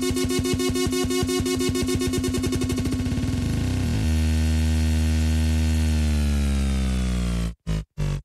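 Loud electronic makina dance music played from a DJ's decks through a club sound system. It opens with a fast stuttering repeat, then about four seconds in changes to a long held, distorted bass-synth note that slowly falls in pitch. Near the end it is chopped on and off in short bursts.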